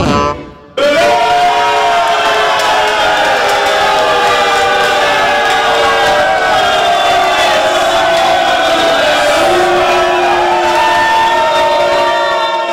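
A live band's song breaks off just after the start; after a short gap, many voices from the band and the crowd sing together, holding one long closing chord.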